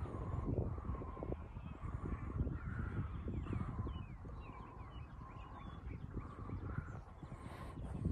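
Wind buffeting a phone microphone, an uneven low rumble that rises and falls in gusts, with small birds chirping over it.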